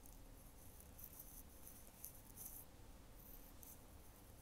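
Near silence, with faint irregular high scratchy rustles several times: hands brushing through hair close to a wired earphone microphone.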